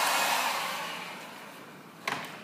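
Handheld electric heat gun blowing a steady rush of air, which fades away over the second half.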